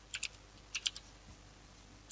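Faint computer keyboard typing: about four quick keystrokes in the first second.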